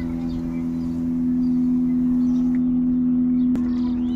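A steady low hum holding one pitch with overtones, unchanging throughout, with a single click about three and a half seconds in.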